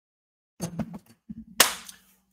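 A few faint clicks and a brief low hum, then one sharp smack about a second and a half in.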